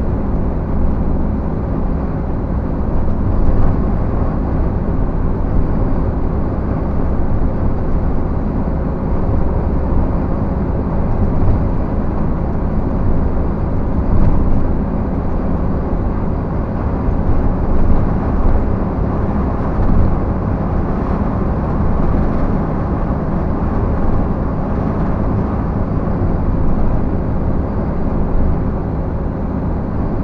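Steady rumble of tyre and engine noise heard inside the cab of a vehicle cruising along an asphalt road, with a low, even engine hum underneath.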